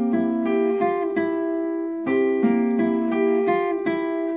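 Steel-string acoustic guitar fingerpicked through a B7 phrase: a bass and a treble note struck together, then single notes climbing and turning back around the 7th to 9th frets. The phrase is played twice, the second time starting about two seconds in.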